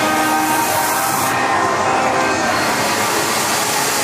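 Haunted-maze soundtrack of sustained droning tones over a dense rumbling noise bed, with a loud hiss on top that cuts off about a third of the way in.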